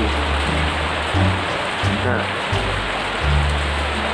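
Steady hiss of rain under background music with a low bass line that changes note every second or so, with a brief murmured word or two.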